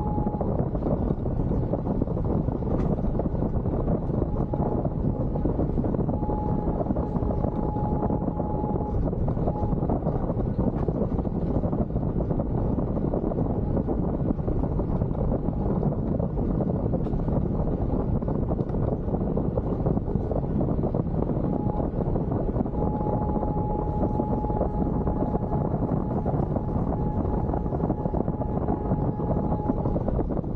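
Suzuki Jimny driving along a gravel forest track, heard from a roof-mounted camera: a steady rush of wind on the microphone over engine and tyre noise, with scattered small ticks. A faint steady high whine comes in for a few seconds early on and again for the last third.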